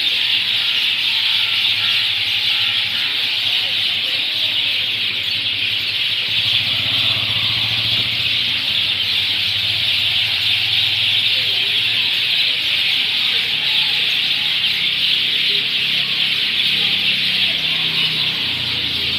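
Many birds chirping at once in a dense, steady chorus with no pauses.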